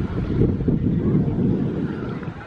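Wind buffeting the microphone: a loud, uneven low rumble with no clear tone.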